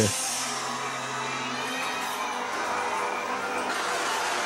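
Haunted-maze soundtrack music with a low held tone that stops after a couple of seconds, under a wash of crowd voices from guests in the maze.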